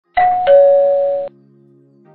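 Two-note ding-dong doorbell chime, a higher note then a lower one, cut off suddenly after about a second.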